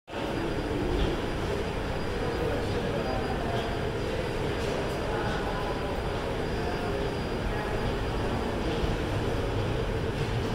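Moving walkway running with a steady rumble, heard while riding it, over the general noise of an airport terminal.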